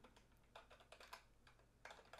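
Faint typing on a computer keyboard: a scattered run of soft key clicks.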